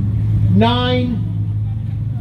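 A single drawn-out vocal sound, a voice rising then falling in pitch about half a second in, over a steady low hum.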